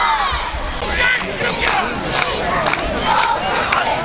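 Football crowd in the stands shouting and cheering, many voices at once, with sharp hits about twice a second.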